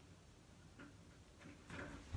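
Near silence: room tone, with a few faint short ticks and a slightly louder brief rustle near the end.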